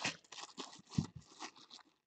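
Faint crinkling and rustling of a clear plastic bag being handled around a baseball, with scattered small clicks and one slightly louder tap about a second in.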